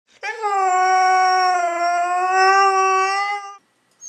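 A Siberian husky howling: one long note held at a nearly steady pitch for over three seconds.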